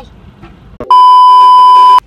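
A loud, steady electronic bleep tone, one pitch held for about a second, starting about a second in and cutting off sharply, of the kind edited in to censor a word.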